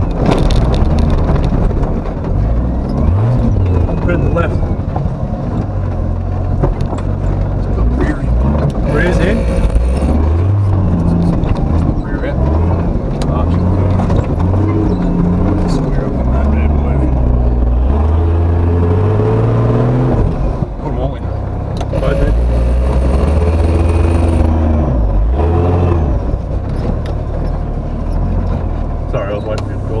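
Turbocharged Nissan Patrol GQ's TB42 straight-six engine revving up and down under load as the truck is winched and driven up a steep bank. Two short bursts of hiss come about nine seconds in and again around twenty-two seconds.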